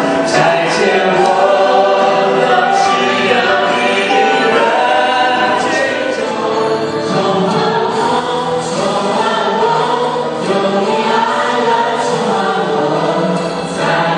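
A small group of men and women singing a Christian worship song together as a choir.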